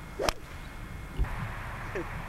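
Golf driver swung at full speed: a brief swish ending in one sharp crack as the clubhead strikes the ball, about a quarter second in. About a second later comes a dull low thump.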